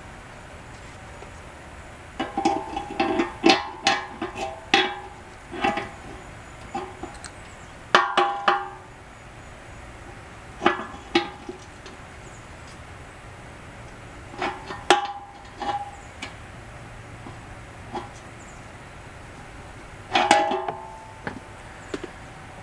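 A wrench and locking pliers clicking and clinking against a brass fuel petcock fitting as it is tightened onto the tank, in five short bursts of ringing metallic clicks with pauses between.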